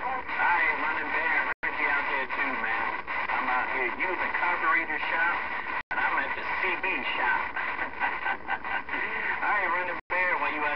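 Voices on the air coming through a Galaxy CB radio's speaker, garbled and hard to make out. The audio cuts out completely for an instant twice.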